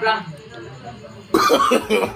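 A man coughs suddenly and harshly about a second and a half in, while drawing on a vape.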